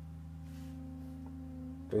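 Electric fuel pump running with the ignition key on and the engine not yet started: a steady low hum made of several even tones.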